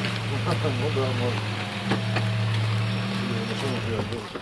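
A car engine idling with a steady low hum. The hum dies away just after the end.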